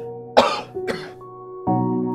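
A man clears his throat twice in quick succession, two short harsh coughs that are the loudest sounds, over soft, sustained background music whose chord changes near the end.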